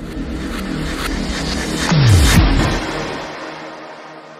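Logo-intro sound effect: a rumbling whoosh that builds to a peak about halfway, with a steep falling bass drop, over sustained synth tones, then fading away.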